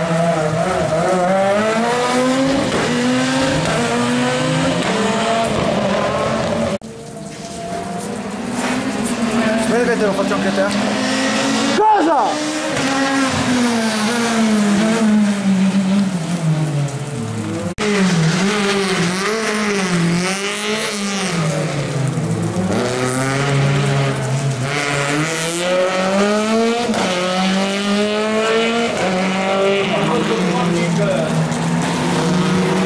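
Rally car engines revving hard, their pitch climbing and dropping again and again with gear changes and lifts off the throttle. The sound breaks off abruptly three times, each time picking up a different car.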